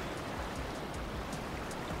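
Small waves washing and lapping on a rocky sand beach, heard as a soft, steady hiss of water.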